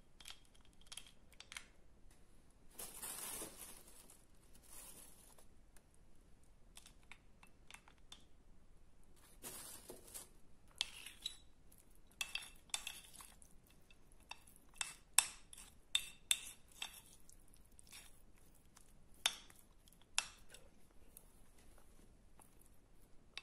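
A metal spoon scraping and clinking against a bowl while scooping wet Tavrida clay paste, with a few brief scrapes early on and a run of sharp clinks in the second half.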